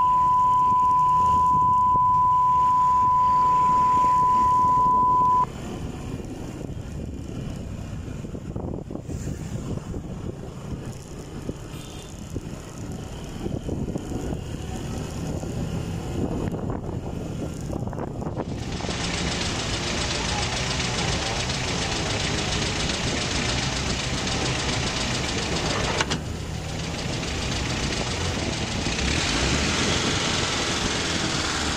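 A loud, steady high beep for about the first five seconds, over the Suzuki Gixxer 155's single-cylinder engine running as the motorcycle pulls away and accelerates through the low gears. From about two-thirds of the way in, a hiss of wind on the microphone rises with the speed.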